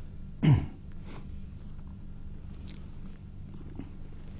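A single short cough from an elderly man, about half a second in, over a low steady hum.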